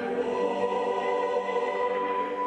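A choir singing, holding long sustained chords; the harmony shifts shortly after the start, with a new higher note entering.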